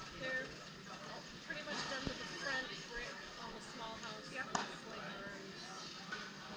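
Scattered, indistinct voices of people around an outdoor baseball field, with two sharp knocks, the louder one past the middle.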